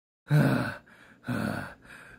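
A man's voice gasping and groaning in pain, three short breathy groans about a second apart, the first about a quarter second in, as the cartoon mailman lies dazed after a fall.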